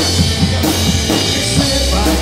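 Live rock band in an instrumental passage without vocals: a drum kit beating out a steady rock rhythm over electric bass and electric guitar.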